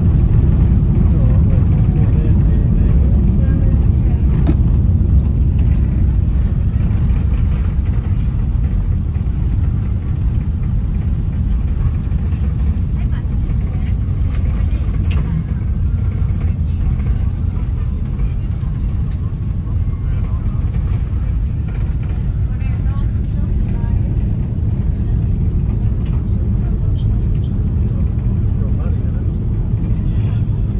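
Airbus A330 cabin noise during the landing rollout: a steady low rumble from the engines and the wheels on the runway, easing off a little as the airliner slows.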